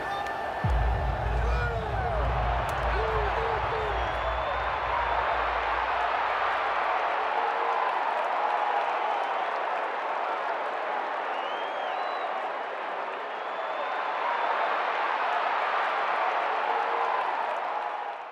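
Stadium crowd noise, a dense din of many voices, with a low music bed underneath that fades out about halfway through.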